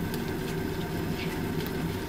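Frying pan of hamburger steak simmering in sauce: a steady hiss over a constant low hum, with a few faint clicks of a plastic spoon stirring.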